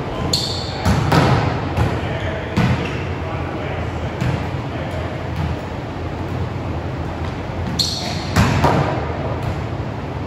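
Volleyball quick attacks in an echoing gym: a sharp slap as the ball is hit, then thuds of the ball striking and bouncing on the hardwood floor. Two such attacks come, one about a second in and another near the end.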